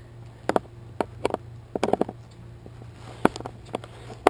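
Screwdriver working a footpad screw on a twin-tip kiteboard: a string of irregular short clicks and taps as the tool seats and turns and is handled against the pad and board.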